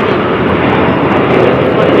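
Jet airliner flying low overhead, a steady loud noise with no breaks.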